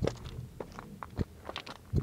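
Boots crunching and scuffing on loose, broken lava rock: a handful of short, irregular crunches.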